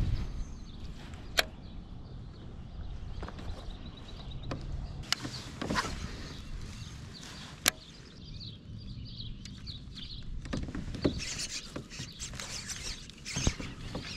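Handling noise from casting and reeling a baitcasting rod and reel in a kayak: a scattering of sharp clicks and knocks, the clearest about a second and a half, five and seven and a half seconds in, over a low steady rumble.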